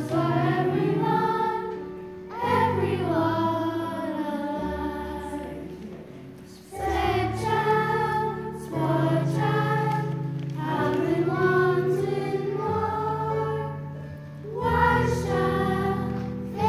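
A children's choir singing a song in phrases over sustained low accompaniment notes, with short breaks between phrases about two, six and fourteen seconds in.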